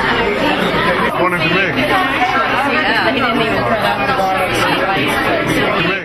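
Many people talking at once in a crowded room: a steady babble of overlapping conversations, with no single voice standing out.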